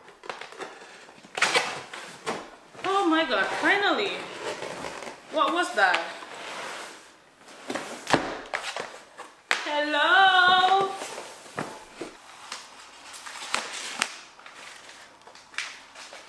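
Cardboard packaging of an iMac box being opened and handled, with scrapes, rustles and sharp knocks as lid flaps and inserts are pulled out. Three short wordless vocal sounds with rising and falling pitch break in, the longest near the middle.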